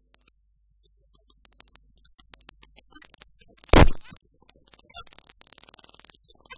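Electronic synthesizer sound effect: a train of pulses that quickens, broken by one loud noisy hit a little under four seconds in, then carrying on as faster pulsing.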